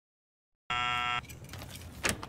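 Silence, then, just under a second in, a half-second electric doorbell buzz, a steady tone that cuts off sharply, followed by faint background ambience.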